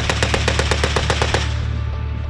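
Vehicle-mounted heavy machine gun firing one long rapid burst of about a second and a half, then stopping.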